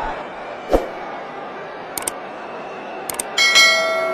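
Steady stadium crowd noise with a single thump under a second in, then two short clicks and a bell chime ringing on from about three and a half seconds in. The clicks and chime are the sound effect of a subscribe-button and notification-bell animation.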